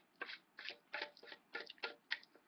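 Chewing close to the microphone: a run of short, irregular wet clicks, about three a second.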